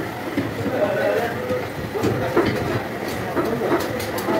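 Indistinct voices over a steady background rumble, with a few faint clicks.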